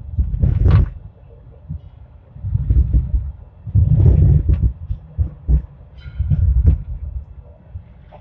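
Hong Kong Light Rail car running on its track, heard from on board: rumbling and knocking in uneven bursts as the wheels pass over the rails and track joints on the approach to a stop.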